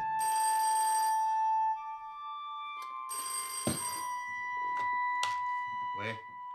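Old black rotary desk telephone's bell ringing twice, each ring about a second long and about three seconds apart, with a sharp knock during the second ring. The phone is ringing to be answered.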